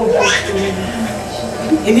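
A woman's impassioned preaching voice: a drawn-out "oh" breaking into a breathy exclamation in the first half-second, then speech resuming near the end, over faint sustained background music.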